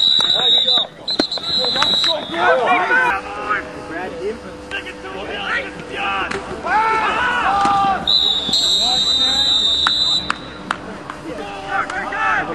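Referee's whistle blowing: two short steady high blasts, then one longer blast about eight seconds in, with players and spectators shouting in between.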